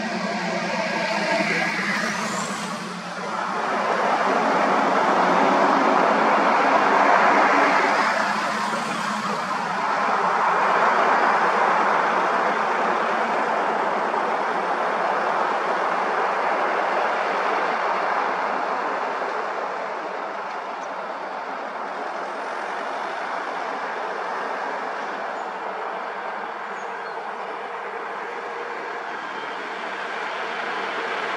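Motor vehicles on a tarmac road: engine and tyre noise that swells loudest as vehicles pass close by, from about 4 to 13 seconds in, then settles to a steadier, quieter level. In the first seconds a faint, steady engine note sits under the noise.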